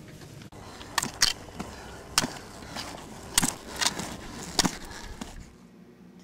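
A handful of sharp knocks and clacks at irregular intervals over a steady background noise.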